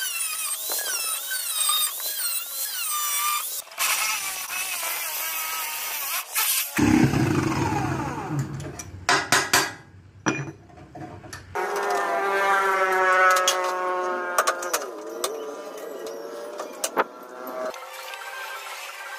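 Angle grinder cutting steel plate, its whine wavering up and down under load, then a few seconds of harsh grinding. Next come a few sharp metal taps, and music takes over for the last several seconds.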